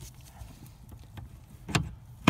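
A few light clicks and taps, with one louder knock near the end, as a steering shaft universal joint is worked off its splined shaft with hand and tool.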